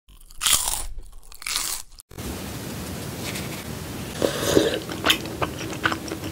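Two loud crunchy bites in the first two seconds. After a short break, wooden chopsticks work through saucy ramen with rice cakes and melted cheese: soft wet, sticky sounds, then a few sharp clicks of the chopsticks.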